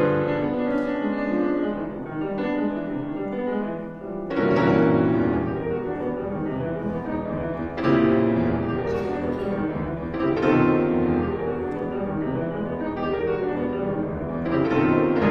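Solo concert grand piano playing dense, loud contemporary classical passages, with strong new surges of sound about four, eight and ten seconds in.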